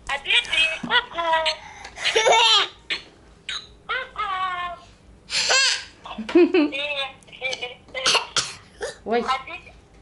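A toddler girl's high voice babbling in short bursts and giggling, with a broad laugh about midway.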